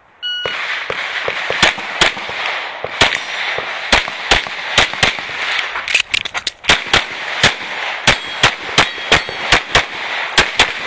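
A short electronic start beep, then a fast string of pistol shots from a red-dot race pistol, with a brief lull about six seconds in. A few of the shots are followed by a short metallic ring, as of steel targets being hit.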